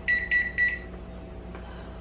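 Three short electronic beeps from a kitchen appliance's keypad as buttons are pressed to set a cooking timer, the last a little longer, all within the first second; a low steady hum goes on underneath.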